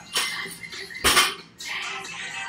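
A 185 lb barbell loaded with bumper plates dropped from the shoulders onto a rubber gym floor: a sharp clank just after the start, then the heavy landing, the loudest sound, about a second in.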